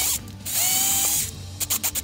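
Small electric drill boring a hole in a diorama base for a model tree trunk. It runs in a short burst about half a second in, its whine rising as it spins up and then holding steady for under a second, and a run of quick clicks follows near the end.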